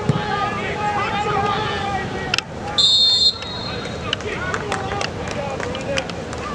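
A referee's whistle blows one short, shrill blast about three seconds in, over spectators' voices.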